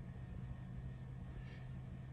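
Quiet room tone with a low, steady hum and no distinct events.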